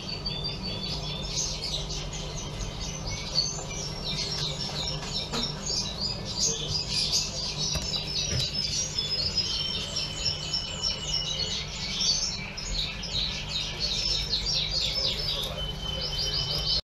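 A dense chorus of many small birds chirping continuously in short, high calls, over a steady low hum.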